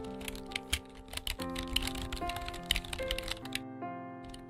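Typing clicks, a fast irregular run of keystrokes, over background music of held notes. The clicks pause briefly near the end.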